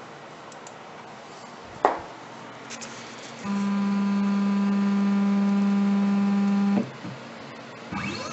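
CNC router's Z-axis stepper motor whining at one steady pitch as it slowly lowers the bit toward an aluminum touch-off block, then cutting off suddenly when the bit makes electrical contact with the block. A single sharp click comes about two seconds in.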